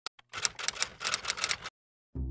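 Typewriter keystroke sound effect: two lone clicks, then a quick run of clacking keys for about a second and a half that stops abruptly.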